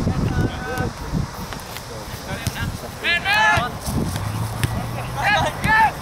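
Men shouting short calls across an open soccer field during play: a brief call about half a second in, then louder high-pitched shouts about three seconds in and again near the end, over a low rumble of wind noise on the microphone.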